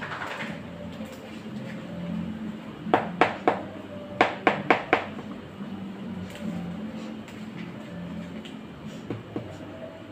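Bijao leaf rustling as a bollo of plantain dough is folded and wrapped by hand, with two quick runs of sharp clicks or taps, three about three seconds in and four just after four seconds, over a low steady hum.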